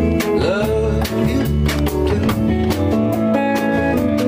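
A live band plays an instrumental passage with a steady beat. A Fender Telecaster electric guitar leads, over bass, and one note bends in pitch about half a second in.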